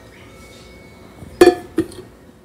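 An empty metal wax-pouring pitcher knocking twice against a hard counter: two sharp metallic clanks with a short ring, about half a second apart near the end, the first louder.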